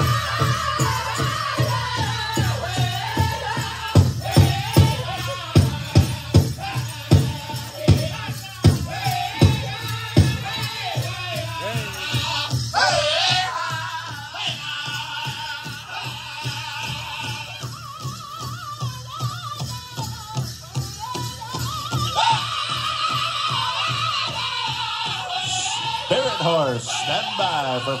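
A powwow drum group singing over a steady beat on a big drum. The drumbeat is loudest and sharpest between about four and ten seconds in, at roughly two strokes a second.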